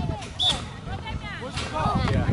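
Distant voices of players and spectators calling out, several at once and overlapping, with a short sharp knock about half a second in.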